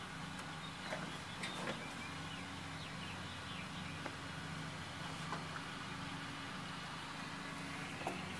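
A steady low hum, with a few faint rustles and clicks about one to two seconds in as a hand works through the nesting material inside a plastic nest box.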